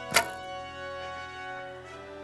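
A single sharp thunk about a fifth of a second in, the bowstring released as an arrow is shot. Background music with long held notes runs under it.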